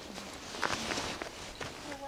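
Footsteps on dry, twig-strewn dirt, about five irregular steps.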